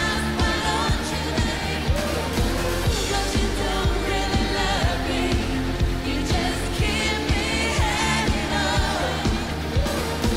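Live pop-rock band playing over a steady drum beat, with a woman singing lead into a microphone.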